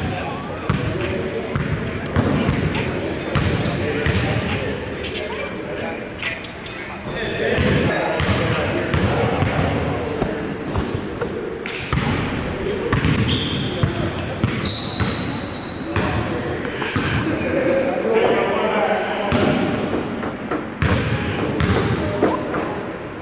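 A basketball bouncing on a hardwood gym floor, with repeated short thuds, among players' indistinct voices echoing in a large gymnasium.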